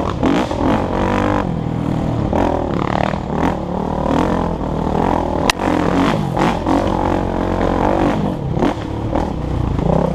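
Dirt bike engine running and revving up and down over a bumpy trail, heard from a camera mounted on the bike, with the bike rattling over rough ground. One sharp knock about halfway through.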